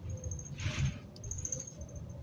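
Interior of a New Flyer XD60 articulated bus under way: low drivetrain and road rumble with short, high-pitched squeaks from the bodywork, and a brief hiss a little over half a second in.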